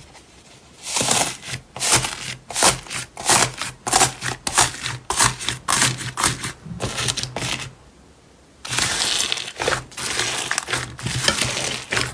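Hands pressing and kneading foam-bead slime, the beads crackling and popping in quick crisp clusters with each press. After a short lull a bit past halfway, the crackling comes back denser and more continuous.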